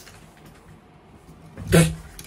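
A man's short, loud grunting exclamation near the end, after a second and a half of quiet room tone.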